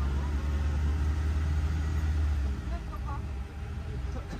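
Low, steady rumble of an open-sided park shuttle driving along a paved road, with its motor and tyres heard from the passenger side; the rumble eases off about two and a half seconds in.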